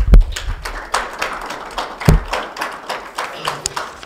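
Audience applauding, a dense patter of many hands clapping that thins out toward the end, with two deep thumps, one at the start and one about two seconds in.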